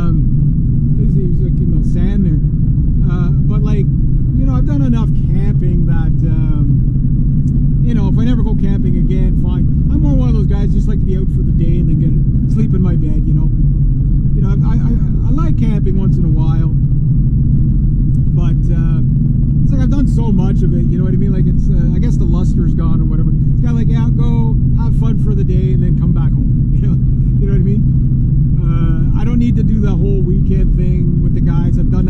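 Steady low drone of a Honda car's engine and tyres heard from inside the cabin while driving at road speed, with a man's voice talking over it on and off.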